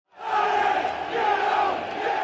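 A large football crowd shouting together. It swells up from silence just after the start and stays loud.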